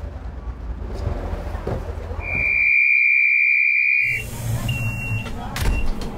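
A train's door-closing warning buzzer gives one loud, steady high beep about two seconds long, then a shorter, fainter beep about a second later, over a low rumble of the train standing at the platform.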